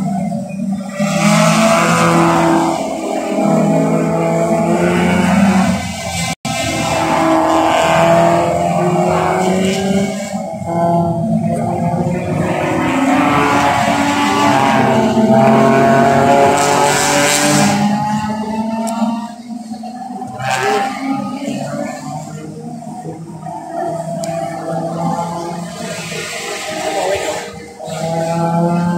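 Several race cars passing on the circuit, their engines revving up through the gears and dropping back in pitch at each shift, one car after another. The engine sound is loud for the first two-thirds and fainter near the end.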